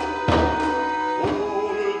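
Chamber ensemble of strings and woodwinds playing an arrangement of a Lak song, with held notes over a low beat struck about once a second.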